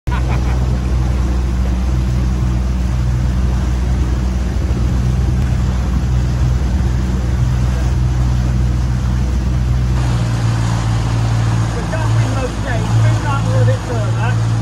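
Outboard motor of an inflatable coach boat (RIB) running steadily under way, a loud low hum mixed with wind and water noise; the deepest part of the rumble eases about ten seconds in.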